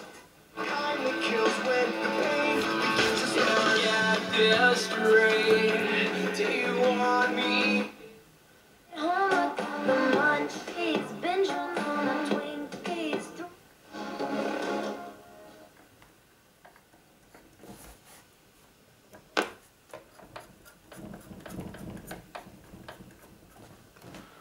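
A Tesla A5 radio cassette recorder's built-in loudspeaker playing radio as stations are switched: about 8 s of music, then short snatches of music and singing cut off between stations. From about 15 s in there is only faint crackle and a few clicks, the medium-wave band not working.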